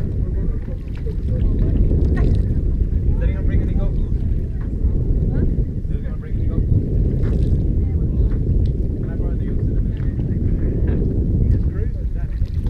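Wind buffeting the camera's microphone in a steady low rumble, with faint voices now and then in the background.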